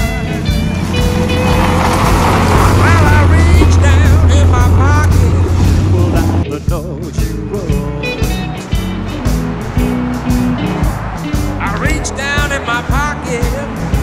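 A blues-rock band song playing, with wavering lead lines. For the first six seconds a car's engine builds up beneath it as the car approaches, then cuts off abruptly.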